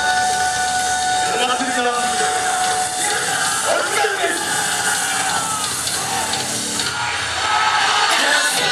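Yosakoi dance music played loud through outdoor street loudspeakers, with voices calling out over it.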